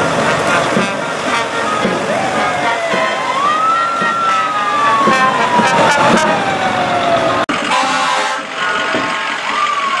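Fire engine siren wailing: it rises steeply to a high pitch about three seconds in and slides slowly down over about four seconds, then rises and falls again near the end. Beneath it, a brass band plays.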